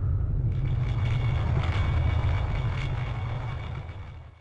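Sound effect for an intro logo: a loud, steady, deep rumble with a thin, shimmering high ringing layered on from about half a second in. It all fades out near the end.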